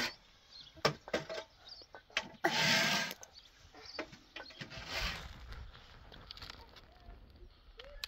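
Soil being worked through a round hand sieve: scattered clicks and two short rasping bursts, the louder about two and a half seconds in, a weaker one near five seconds.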